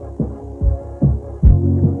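Instrumental stretch of a children's cartoon theme song: a heavy low beat about twice a second under held chords.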